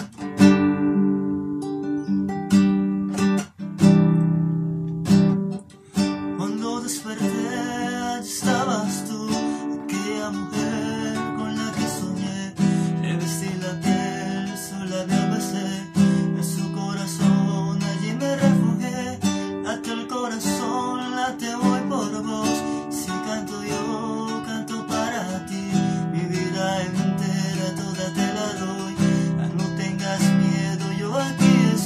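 Acoustic guitar strummed in steady chords, joined by a man's singing voice from about seven seconds in.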